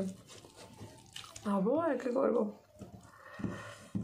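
A woman's voice, a short spoken phrase or vocal sound about a second and a half in. Around it are soft eating sounds: fingers mixing rice on a metal plate, with a few light clicks.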